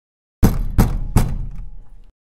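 Three loud knocks in quick succession, about 0.4 s apart, each ringing briefly before the sound cuts off suddenly.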